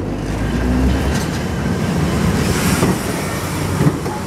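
Heritage electric tram passing close by, its wheels rumbling on the rails, heaviest in the first second, with a couple of brief sharp clicks.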